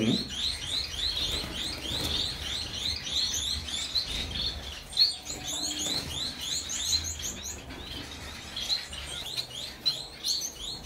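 Caged finches chirping: a quick, steady run of short high chirps, several a second, from a group of small birds.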